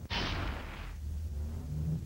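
Broadcast graphic transition sound effect: a sudden burst of noise that fades out within about a second, over a low steady rumble.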